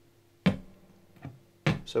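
Three-string cigar box guitar: a single picked note about half a second in, with the strings ringing on faintly.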